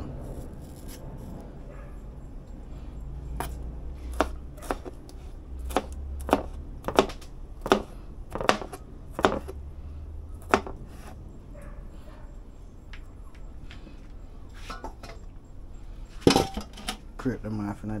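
A chef's knife slicing a red bell pepper into strips on a plastic cutting board: a string of sharp, uneven knocks as the blade strikes the board, most of them in the first ten seconds. A few louder knocks come near the end.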